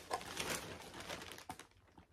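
Faint rustling and handling of cosmetic packaging, with two light clicks near the end as the rustle fades out.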